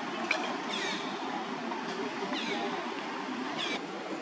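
Several short, high calls, each falling in pitch, four times over a steady outdoor background hum, with a single sharp click near the start.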